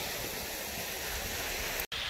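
A mountain waterfall cascading down rock steps: a steady rush of falling water. It cuts out for an instant near the end and resumes with a brighter hiss.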